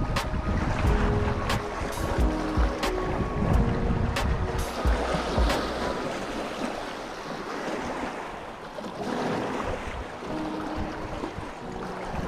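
Choppy lake water washing and slapping against a rocky shoreline, with several sharp slaps in the first five seconds, and wind buffeting the microphone. Background music with held notes plays under it for the first few seconds and again shortly before the end.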